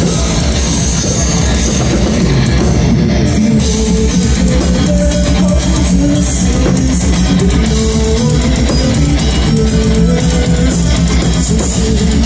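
Live metal band playing loud, with electric guitar, bass guitar and drum kit.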